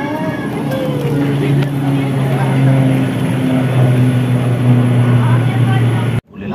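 A steady low engine hum that comes up about a second in and holds, with people's voices over it.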